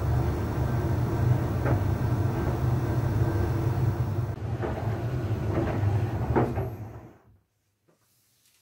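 Arçelik 3886KT heat-pump tumble dryer with inverter motor running: a steady low hum with the drum turning and a few light knocks from the tumbling load. The sound drops away about seven seconds in.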